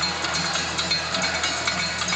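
Live stage band music in an instrumental break between sung lines, carried by a rhythmic percussive beat.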